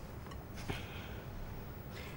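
Quiet room tone with a steady low hum, and a faint soft tick a little under a second in.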